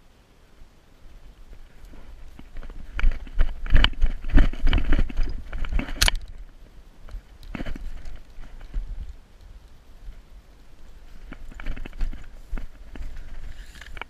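Footsteps running over grass with gear rattling and brushing close to the microphone, loudest for a few seconds in the first half and ending in one sharp click about six seconds in. After that come scattered softer clicks and rustling as the player shifts behind cover.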